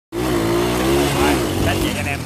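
Honda Win 100 motorcycle's single-cylinder two-stroke engine running as the bike is ridden past, its note wavering slightly in pitch.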